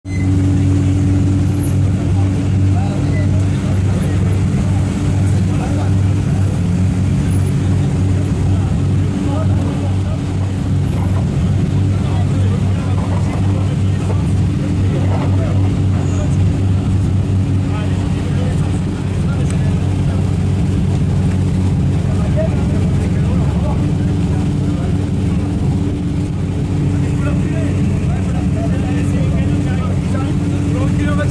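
Several rallycross cars idling together on the start grid, a steady deep engine hum that holds the whole time.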